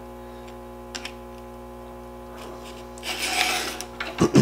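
One rasping stroke of a Stihl 2-in-1 Easy File across a chainsaw chain about three seconds in, its round file sharpening a cutter while the flat file takes down the depth gauge. A small click comes about a second in, over a steady low hum.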